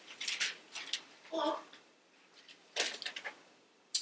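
Thin Bible pages and loose notepaper rustling as they are turned by hand at a pulpit, in several short bursts, with a brief murmur of voice about a third of the way in.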